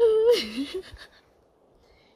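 A woman's breathy, wordless vocal exclamation sliding down in pitch, lasting under a second right at the start: she is acting out her startled reaction when a wolf came up to her.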